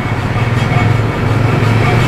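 A motor vehicle engine idling with a steady low rumble.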